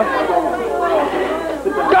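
Speech only: raised voices talking over one another in a heated argument.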